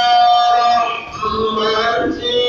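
A voice chanting a devotional mawlid song, holding one long note through most of the first second before going on to the next phrase.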